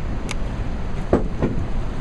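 Steady rumbling noise of wind on the microphone and rushing river water around a boat, with a brief click near the start and a couple of short scuffing sounds about a second in.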